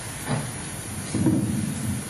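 Steady hiss of a played-back press-conference recording, with muffled low room noise that swells about a second in.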